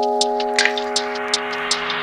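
Lo-fi hip hop instrumental in a breakdown: a held keyboard chord with light, regular hi-hat ticks and no bass or kick drum. A soft hiss swells under it.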